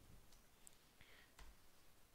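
Near silence with a few faint computer mouse clicks as a spreadsheet range is selected.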